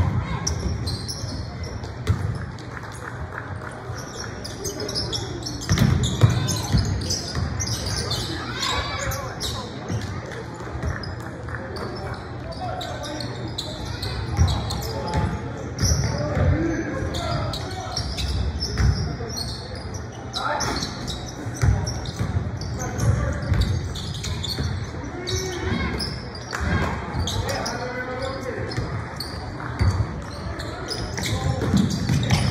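Live basketball game in a gym: a basketball bouncing on a hardwood court in frequent knocks, with players' and spectators' voices calling out, all echoing in the large hall.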